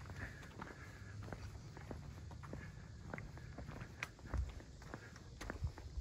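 Faint footsteps of someone walking on a paved road over a steady low rumble, with a heavier thump a little past the middle.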